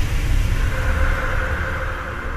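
Tail of a TV station's closing logo sting: a deep rumble with a faint held synth tone, dying away.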